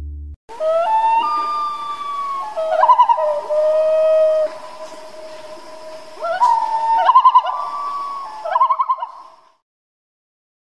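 Waterbird calls over a lake: long, held whistled calls that step up and down in pitch, broken by several rapid quavering trills. The calls fade out near the end.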